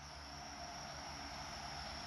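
Faint outdoor background sound: a steady, thin high-pitched whine over a low, even rumble.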